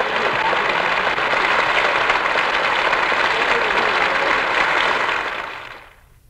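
Live theatre audience applauding steadily at the end of a comic monologue, the applause fading away near the end.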